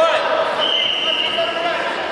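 Voices shouting in a sports hall during a grappling bout, with a rising shout at the start. A single steady high tone is held for about a second in the middle.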